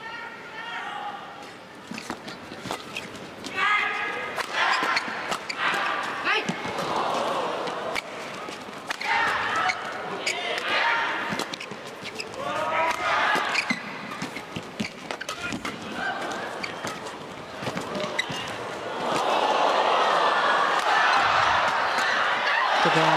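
Badminton rally: rackets striking the shuttlecock again and again in sharp cracks, mixed with players' footwork on the court. About three seconds before the end, the crowd breaks into applause and cheering as the rally finishes.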